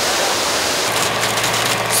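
Steady machine noise from a truck-mounted concrete boom pump running while it pumps concrete to the footings, with a low steady hum coming in about a second in.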